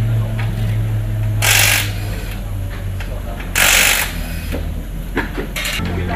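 Pneumatic impact wrench (wheel gun) on a rally car's wheel nut, firing in two short bursts about two seconds apart, over a steady low hum.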